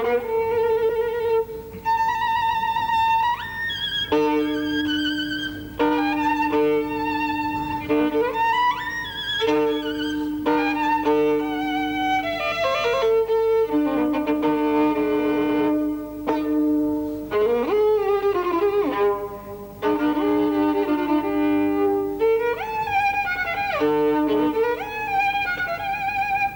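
Solo violin playing a passage from a violin concerto in short phrases, often sounding two notes at once: a held lower note under a moving upper line. Several notes slide upward in pitch.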